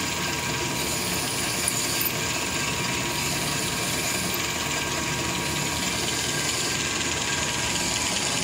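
Hardinge DV-59 lathe running steadily while a drill bores a long hole in grade 5 titanium under flowing coolant, with a thin steady whine over an even machine hum.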